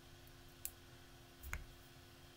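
Two faint clicks about a second apart, the second with a dull low thump, over a faint steady electrical hum.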